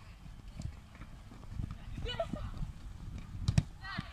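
Football being kicked during a goalmouth scramble on a grass pitch, with players shouting. Sharp knocks of the ball come a few times, the loudest two in quick succession near the end, over a low steady rumble.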